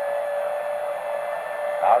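A steady hum at one pitch over background hiss in old television broadcast audio, with a man's voice saying one word near the end.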